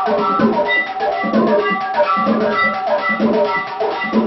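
Devotional aarti music: drums and percussion struck in a fast, steady beat, with sustained ringing tones over them.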